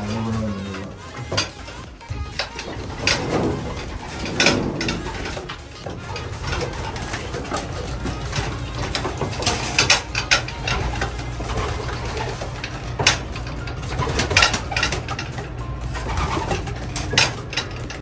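Racing pigeons cooing in a loft, with scattered sharp clicks and flutters. A steady low hum comes in about six seconds in.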